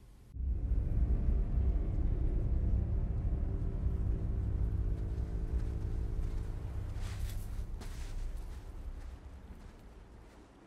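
Film soundtrack: a dark, sustained low music drone of steady held tones over a deep rumble. It swells in at the start and slowly fades away, with a couple of soft footfalls on sand near the end.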